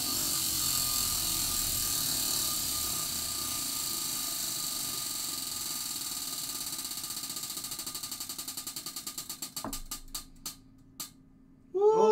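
Prize wheel spinning, its pointer ticking over the pegs: a fast run of ticks that gradually slows into separate clicks and stops about eleven seconds in as the wheel comes to rest.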